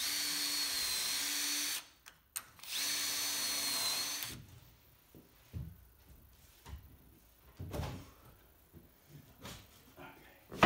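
Festool cordless drill with a self-centring hinge bit drilling screw holes through a steel hinge into an oak door edge: two steady runs with a high whine, the first about two seconds long, the second about a second and a half. A few faint knocks follow.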